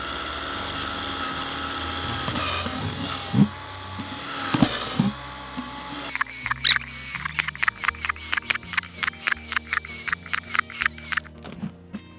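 Cordless drill running as it bores drainage holes through a plastic plant pot, heard under background music. After about six seconds the music takes over with a quick steady beat of pitched notes.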